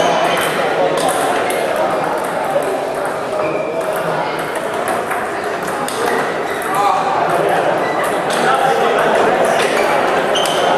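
Table tennis balls clicking irregularly off tables and bats, over a murmur of voices.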